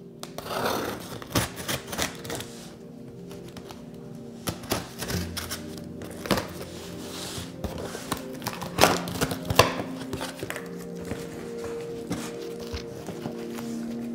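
A knife slitting packing tape on a cardboard box, then the flaps being pulled open: irregular scrapes, clicks and cardboard knocks over steady background music.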